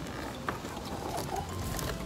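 Hard plastic toy goggles being handled and twisted at the lens rings, giving a run of small ratchet-like clicks.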